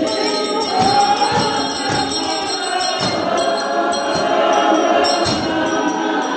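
A large choir of women's voices singing a Xhosa hymn together, with a steady percussive beat about twice a second.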